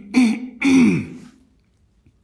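A man coughing and clearing his throat in a quick run of rough bursts during the first second, the last one the longest, falling in pitch.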